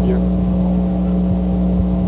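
Steady electrical hum on an old lecture recording: a constant low drone with fainter steady tones above it.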